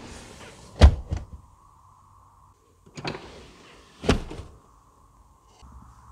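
Rear seat backrest released by its trunk-side button and folding forward, landing with a heavy thud about a second in; a click and a second, lighter thud follow around three and four seconds in.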